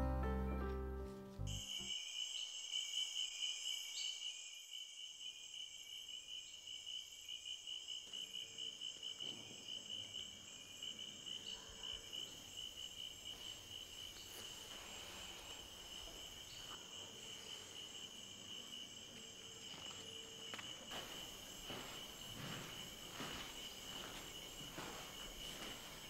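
Crickets chirping in a steady, high, rapidly pulsing trill, as a string music cue fades out in the first second or two. Faint soft knocks join in during the second half.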